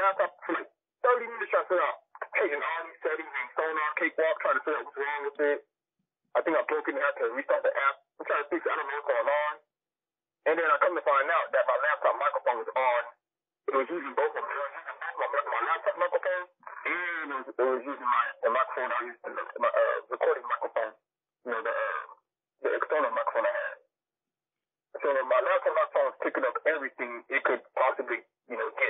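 Speech only: a person talking in short runs of phrases, with the sound dropping to silence in the gaps between them.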